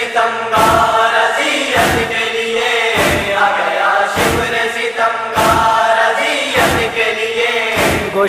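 Nauha chorus: a group of voices holding a slow, drawn-out chant, over chest-beating (matam) thuds that keep an even beat of about one every 1.2 seconds, seven strokes in all.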